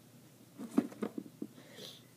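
A few light clicks and knocks of small hardened polymer clay charms being handled and set down on a cloth-covered table, followed by a brief soft rustle.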